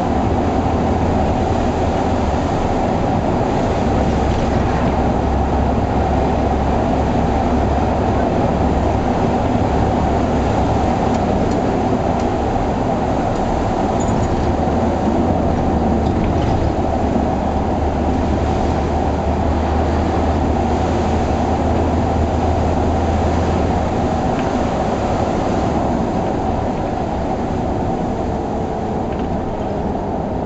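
SOR C 9.5 bus's diesel engine running under way, heard from inside the passenger cabin together with tyre and road noise. The low engine drone changes pitch a few times, then eases off near the end as the bus slows.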